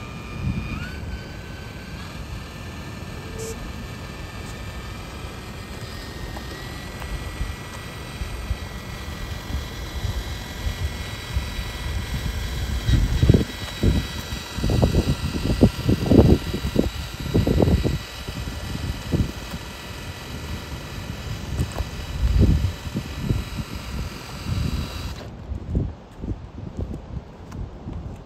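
Brushless motor and drivetrain of an RC crawler whining as the truck crawls along slowly, the thin steady whine stepping up in pitch twice as the throttle rises. Clusters of low rumbling bursts come in the second half.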